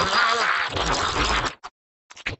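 A swarm of cartoon cereal-pillow creatures giving a massed, buzzing scream while devouring chocolate. It cuts off suddenly about one and a half seconds in, leaving a couple of short clicks.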